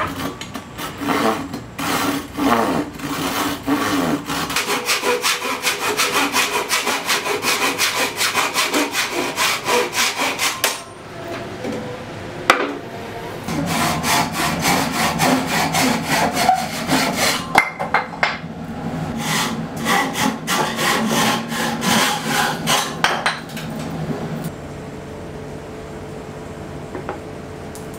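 Hand saw cutting through a hardwood chopping board, with steady back-and-forth strokes. The sawing pauses briefly about eleven seconds in, then starts again and dies away near the end.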